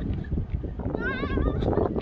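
Wind buffeting the microphone throughout. About a second in, a high, wavering vocal sound lasts just under a second.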